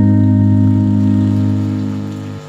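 The last sustained chord of a karaoke backing track, held steady after the singing has stopped and fading away near the end.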